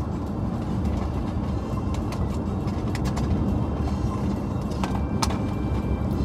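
Steady low rumble of road and engine noise inside a moving car's cabin, with a few sharp clicks.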